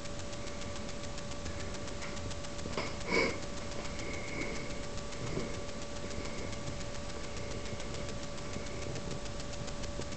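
Steady hiss with a constant thin whine, the self-noise of a low-quality camera's microphone. A brief louder noise comes about three seconds in, with a couple of fainter ones later.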